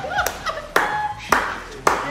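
A person clapping hands four times, about two claps a second.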